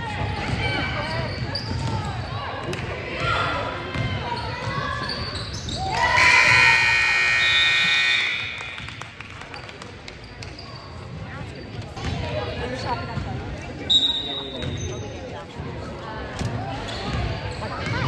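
Gym scoreboard horn sounding one steady, loud blast for about two and a half seconds, marking the game clock running out at the end of the period, over players' voices and a basketball bouncing on the hardwood.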